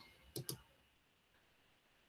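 Two quick computer mouse clicks in close succession, about a third of a second in, then near silence.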